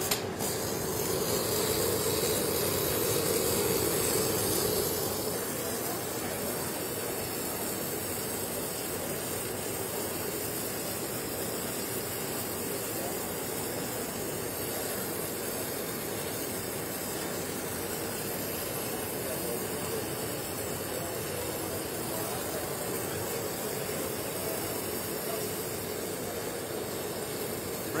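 Robotic STT short-circuit MIG welding arc laying the root pass on a steel pipe: a click as the arc strikes, then a steady hiss, a little louder for the first few seconds.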